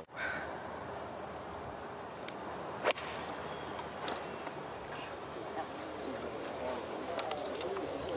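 A golf iron striking the ball on an approach shot: one sharp crack about three seconds in, over steady outdoor background noise.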